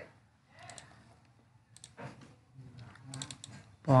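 A few faint, quick clicks of computer keys or mouse buttons in small clusters, over a low murmur. Loud speech starts near the end.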